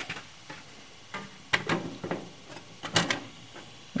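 A handful of sharp clicks and taps, starting about a second in, as a clear plastic magnetic vent cover is handled and set back over the vent grille of a steel box.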